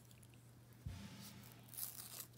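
Faint handling of foam sticker pieces and their peel-off backing paper: a soft knock just under a second in, then a short papery rustle near the end.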